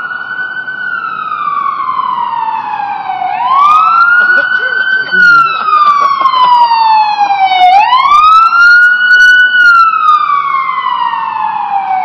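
Emergency vehicle siren on a wail: each cycle climbs quickly, holds and then slides slowly back down, repeating about every four and a half seconds, and it grows louder about four seconds in.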